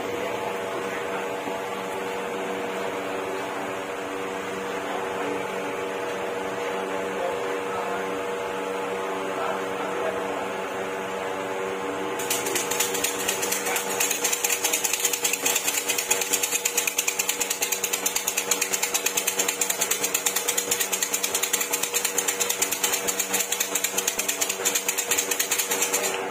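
Bamboo siam si fortune-stick cylinders shaken hard and fast, the wooden sticks rattling in a rapid, even clatter from about halfway through, as they are shaken until a numbered stick drops out. Before that, a steady hum with several tones.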